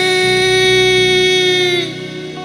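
Male lead vocalist holding one long sung note over a band's backing in a Bengali folk-fusion song; the note sags in pitch and fades out near the end.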